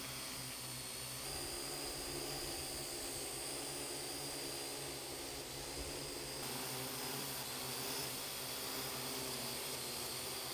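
Parrot AR.Drone 2.0 quadcopter hovering: a steady buzz from its four electric motors and propellers, several steady tones over a hiss. The sound shifts slightly about six seconds in.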